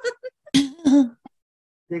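A person laughing briefly over a call: a few quick chuckles, then two louder breathy bursts about half a second in.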